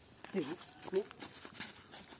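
Two short cries, each dipping and rising in pitch, about half a second apart, over faint scuffing clicks.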